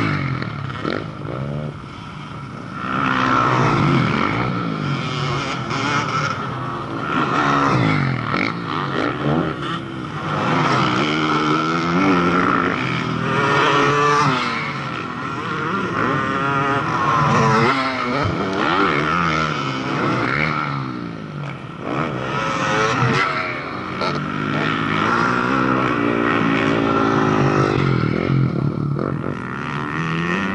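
Motocross dirt bike engines revving hard as the bikes race past over a jump, the pitch climbing and dropping again and again with the throttle and gear changes, several bikes overlapping at once.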